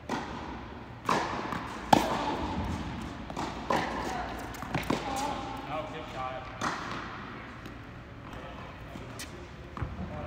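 Tennis ball hits off rackets and bounces on an indoor hard court, sharp echoing pops spaced about a second apart, the loudest about two seconds in, ringing in a large hall.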